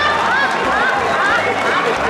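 Audience laughter and applause after a joke's punchline: a steady dense clatter of clapping with laughing voices rising through it again and again.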